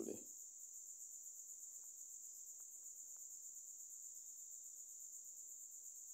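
Faint, steady high-pitched trilling of crickets, pulsing evenly.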